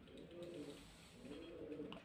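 A bird calling faintly in two low phrases, one in the first second and one in the second.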